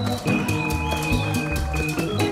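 Live Latin band playing an instrumental mambo passage: saxophone with Hammond organ, guitar, congas and timbales over a steady low beat.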